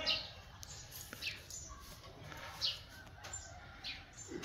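Small birds chirping, a few short high calls spread over a few seconds, against a faint outdoor background.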